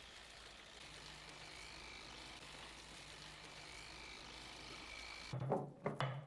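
Faint, steady background hum and hiss. About five seconds in it gives way abruptly to a louder passage of knocks and a low pitched sound.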